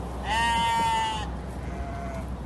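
Harri sheep bleating: one long, high bleat about a quarter second in, then a short faint bleat near the end.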